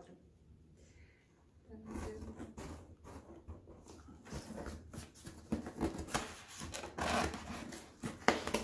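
A cardboard shipping box being opened by hand: irregular rustling, scraping and crackling of cardboard, tape and packing, starting about two seconds in and busiest near the end.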